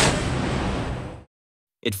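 A Phalanx CIWS's 20 mm M61 Vulcan rotary cannon ending a burst of rapid fire. The loud buzz of the firing drops off at the very start and fades away over about a second, then gives way to silence.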